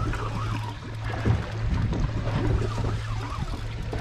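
Boat's Suzuki outboard motor idling with a steady low hum, over a light wash of water around the hull.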